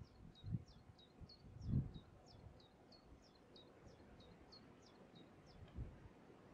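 A small songbird singing a long, steady run of short high notes, about three or four a second, that stops just before the end. A few low buffets of wind on the microphone are the loudest sounds, the strongest about two seconds in.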